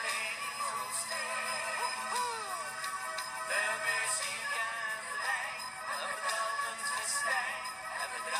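Flemish schlager pop song playing, a gliding melodic lead over a steady band backing.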